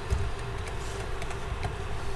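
A few scattered clicks of typing and mouse input on a computer, over a steady low hum.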